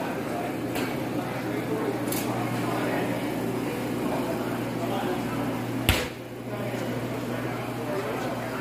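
Indistinct background chatter of people talking over a steady low hum. A sharp click about six seconds in is followed by a brief dip in level.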